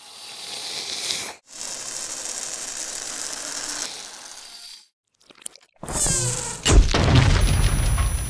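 A long hissing in-breath through the nose, building toward a sneeze, breaks off once and then trails away. After about a second of silence a sudden loud burst follows, about six seconds in.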